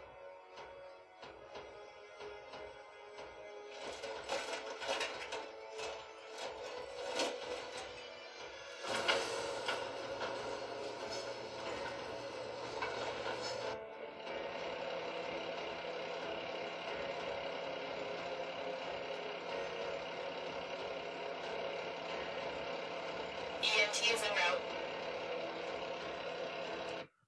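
Background music with fire-scene sound effects layered over it: a clatter of crashing impacts a few seconds in, then a female fire-dispatch voice over a radio, then a steady idling fire-truck ambience that runs on to the end, with one short extra effect near the end.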